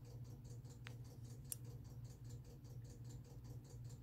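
A bird chirping faintly and steadily, about four short high chirps a second, over a low steady hum. Two faint clicks come in the first half.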